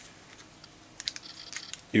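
A few small, faint clicks and taps from hands handling a headset's cable and plastic inline control, most of them from about a second in.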